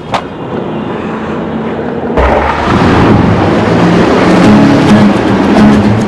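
Steady rumble inside a moving bus. About two seconds in, a louder noise swells up and background music with held notes comes in over it.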